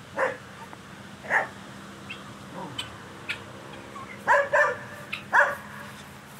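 A dog barking in short, separate barks, about five of them at uneven intervals, with a cluster of three in the last two seconds.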